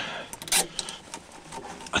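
Hand-handling noises while working with zip ties: a short cluster of sharp clicks about half a second in, with faint rustling.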